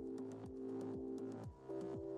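Electronic dance music with a steady kick drum about twice a second under held synth chords and hi-hat ticks; the chord changes near the end.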